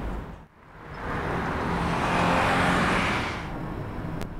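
A car passing by on the road: its noise swells to a peak and fades away over about three seconds.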